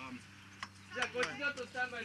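Talking, with a single sharp click in a short lull about two-thirds of a second in, before the talk resumes.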